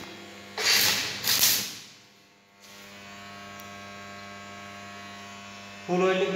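Two short bursts of arc-welding crackle in the first two seconds, then the arc welder's transformer humming steadily.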